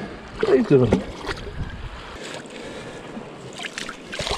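Shallow seawater sloshing and trickling around hands working among seaweed and rocks in a tide pool, with wind on the microphone and a few small knocks. A brief wordless voice sound comes about half a second in.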